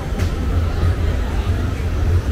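Busy street ambience: voices of passers-by over a heavy, uneven low rumble, with a brief sharp sound just after the start.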